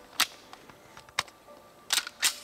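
Walther PPQ M2 .40 S&W pistol being handled: a few sharp metallic clicks spread over the two seconds, the loudest near the end as the slide is racked.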